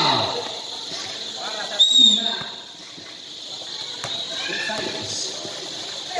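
Scattered voices of players and spectators, with one short, high whistle blast about two seconds in, typical of a referee's whistle.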